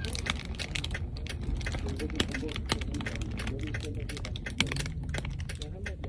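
Muffled voices heard from inside a closed car, with many irregular light clicks and ticks.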